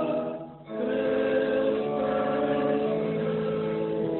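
A church congregation singing a slow hymn in long held notes. The sound breaks off briefly about half a second in, then the next phrase begins.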